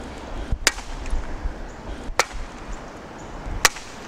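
Tennis racket swung into the net three times, about one and a half seconds apart, each a sharp smack as the racket strikes it.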